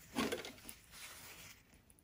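Scissors cutting through quilt fabric, trimming the seam allowance of a mitered corner: one louder snip near the start, then fainter snips and rustling of the cloth.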